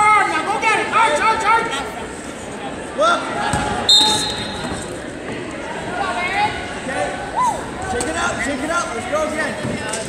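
A referee's whistle blows once about four seconds in: a single shrill, steady note about a second long that stops the wrestling. Voices call out across a large echoing hall throughout.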